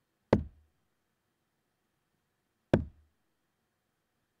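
Two steel-tip darts striking a bristle dartboard, each a short sharp thud, about two and a half seconds apart.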